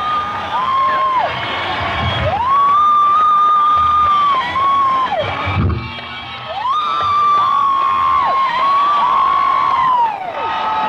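Concert audience cheering between songs, with several loud whistles that glide up, hold for a second or two and drop away, overlapping one another; the crowd dips briefly about six seconds in.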